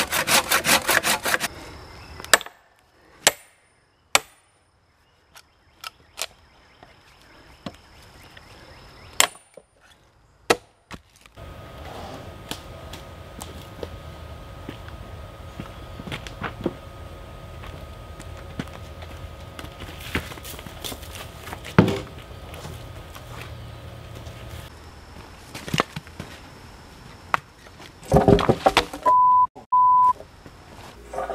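Quick hand-saw strokes through a knot in a log for the first two seconds, then single sharp axe chops into the wood, spaced a second or more apart. Later comes a steady low background with one loud knock, a loud burst of noise near the end, and then a steady one-tone beep.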